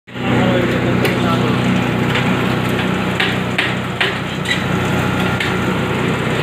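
Zinc and aluminium grinding machine running: a steady machine hum under a dense grinding noise, with a few sharp knocks about three to four and a half seconds in.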